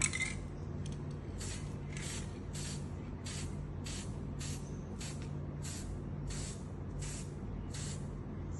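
Aerosol spray-paint can sprayed in short hissing bursts, about one every half second, coating a plastic bottle.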